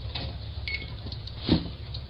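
Low steady hum with one soft thump about one and a half seconds in, heard through a doorbell camera's microphone: a parcel being set down gently on a porch.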